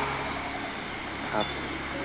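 A steady, even background hiss with a low hum beneath it, the noise bed of an outdoor night scene. A man says one short word about one and a half seconds in.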